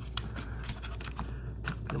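Fingers and cat5 cable scraping and rubbing against a plastic electrical box in drywall, in short clicks and scrapes, as a tangled cable is worked through it. A steady low hum runs underneath.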